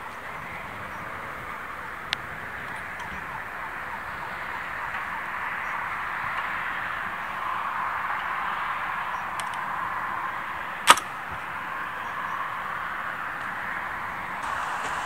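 A steady rushing outdoor background, with a faint sharp click about two seconds in and one louder knock near the end from a wooden field gate swinging shut.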